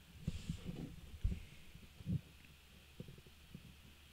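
A few faint, irregular low thumps over a quiet steady hum.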